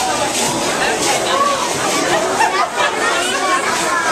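Many voices talking over one another, a steady babble of crowd chatter with no single voice standing out.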